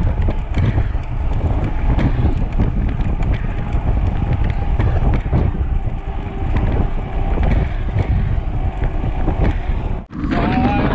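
Wind buffeting the microphone of a bicycle-mounted camera as the bike rolls at about 35–40 km/h, with tyre hum on the concrete road and small clicks and knocks from bumps.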